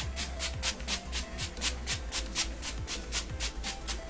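Ulta makeup setting spray pumped in rapid short hisses, about five sprays a second, misting the face, stopping just before the end.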